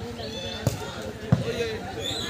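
A football struck twice in play: two sharp thumps about two-thirds of a second apart, the second louder.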